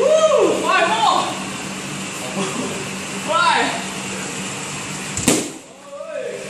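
Short shouts, then about five seconds in a single sharp smack of a strike landing on a trainer's Thai pad.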